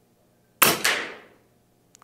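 Air Venturi Avenge-X .25-calibre PCP air rifle firing one shot: a sharp crack a little over half a second in, a second crack right behind it, and a decay of about a second.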